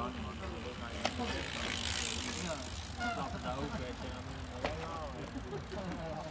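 Mountain bike rolling close past over grass, with a brief hiss of tyres about two seconds in. Indistinct talk from people nearby, a steady low rumble and a couple of sharp clicks run under it.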